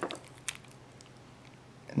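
Faint handling noise as fingers work a small FPV quadcopter frame and its wiring: a few light ticks, with one sharper click about half a second in, over quiet room tone.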